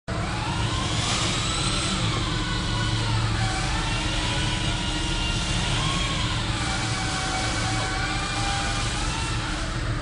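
Electric motor and propeller of a small foam RC airplane whining in flight, its pitch slowly rising and falling as the throttle changes while the plane hovers and manoeuvres, with a steady low hum underneath.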